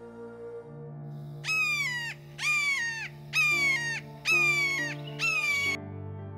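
A bird calling five times, about one call a second, each a clear falling note of about half a second, louder than the soft piano music underneath.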